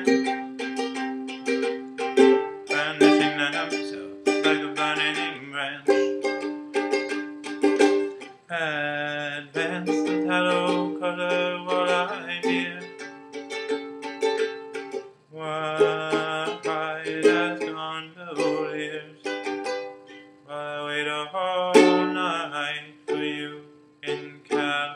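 Ukulele strummed in an instrumental passage, the chords changing every second or two with crisp strum attacks.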